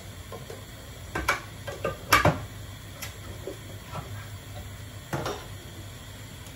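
Kitchen items being handled: four or five short sharp clicks and knocks, the loudest about two seconds in, over a low steady hum.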